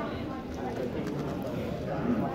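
X-Man Galaxy v2 Megaminx being turned quickly by hand, its plastic faces clacking in quick succession, over the chatter of voices in the room.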